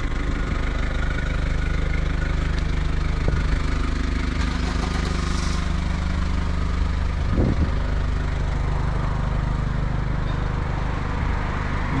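Mazda Bongo Friendee's diesel engine idling steadily.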